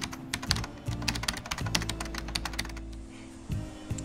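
Rapid, irregular clicking, like keys being typed, from a logo-transition sound effect, over steady background music. The clicking thins out near the end.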